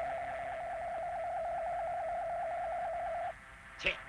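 Cartoon flying sound effect: a steady, slightly warbling electronic tone that cuts off sharply a little over three seconds in, followed by a short swish just before the end.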